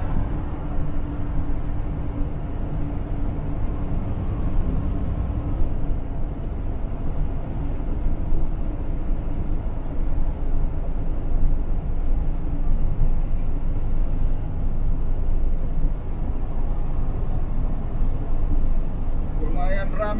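Semi truck driving at highway speed, heard from inside the cab: a steady low engine drone with road and tyre noise.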